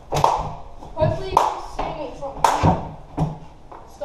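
Skateboard knocking on a concrete floor: about six sharp clacks of deck and wheels, echoing off the surrounding walls.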